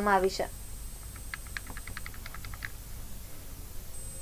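A quick run of faint, sharp clicks, about eight a second for roughly a second and a half, over a low steady hum.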